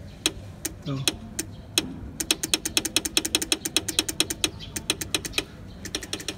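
Motorcycle horn relay clicking: a few single clicks, then a quick even run of about seven or eight clicks a second. The horn itself makes no sound, because the relay switches but current does not reach the horn. The owner suspects a damaged, broken or corroded wire between relay and horn.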